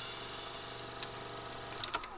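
Film-projector sound effect: a steady mechanical whirr and hum, with a couple of sharp clicks about a second in and near the end.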